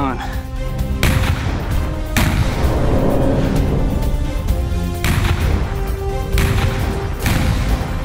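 Four sudden explosive blasts from pyrotechnic charges, each trailing off, about one, two, five and seven seconds in, over background music.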